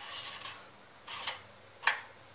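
Rag or cloth rubbing and scrubbing in short strokes under the hood, twice, then a sharp click just before the end.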